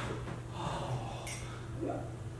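Quiet breath noises from a person, short and soft, over a steady low hum; a brief sharp hiss comes about two-thirds of the way through.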